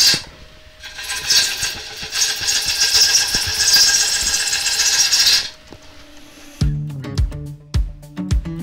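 Bowl gouge cutting the outside of a large sycamore bowl blank spinning on a lathe: a steady hiss of shavings coming off, easing briefly just after the start, then stopping about five and a half seconds in. About a second later, background music with a bass line begins.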